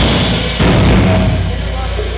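Live rock band's closing hit about half a second in, with guitars, drums and cymbals ringing out and fading over a steady low amplifier hum, as the song ends.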